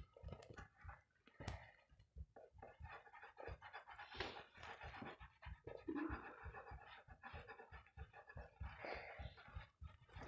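Faint scratching of a coloured pencil on paper as a small circle is shaded in, in short strokes, with soft breathing close to the microphone.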